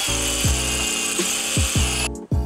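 A handheld power drill running steadily with a high whine as it bores into a building's wall, stopping suddenly at the end. Background music with a steady beat plays underneath.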